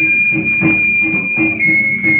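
Hand drums beating a steady rhythm of about four strokes a second, over a high held whistle-like note that steps down in pitch about one and a half seconds in.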